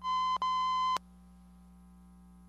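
An electronic beep: a steady high tone lasting about a second, broken briefly partway through and cut off with a click.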